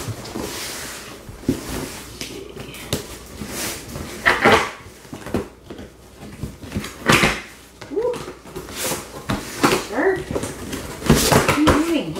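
A large cardboard shipping box being torn open by hand: irregular rips and scrapes as its flaps are pulled and torn apart.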